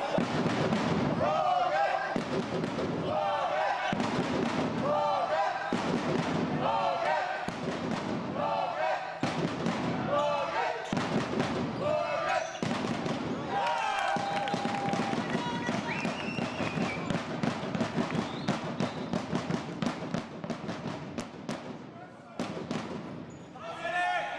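Sound of an indoor handball match: voices repeatedly shouting or chanting, echoing in the sports hall, with sharp thuds of the ball bouncing on the court floor.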